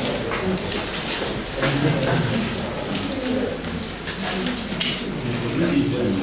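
Indistinct voices in a meeting room, with scattered short clicks and rustles, while people raise voting cards.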